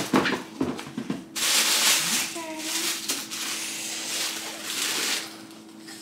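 Black tissue paper rustling and crinkling as it is pulled out of a shoebox, for about four seconds from a second in, with a faint steady hum underneath.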